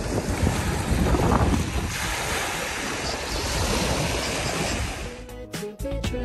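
Steady rushing noise of surf and wind, with wind on the microphone, loudest in the first couple of seconds. Music comes back in near the end.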